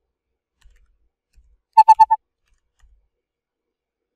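Four short, loud beeps in quick succession, about a tenth of a second apart, a little before the middle.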